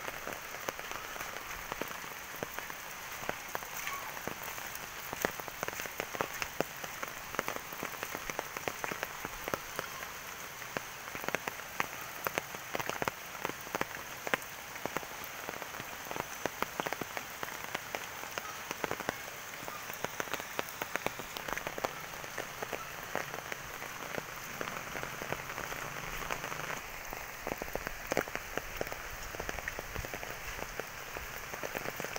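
Steady typhoon rain falling, with a dense, constant scatter of sharp individual drop hits close by.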